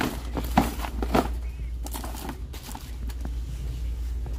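Cardboard boxes and toiletries being set down and shifted around in a wire shopping cart: a few sharp knocks, the two loudest about half a second apart within the first second or so, then lighter handling sounds, over a steady low hum.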